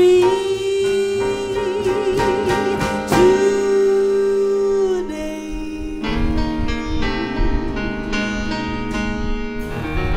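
Female jazz vocalist holding two long sung notes with vibrato over a live jazz band, the second ending about halfway through. The band of guitar, keyboard, upright bass and drums then plays on alone.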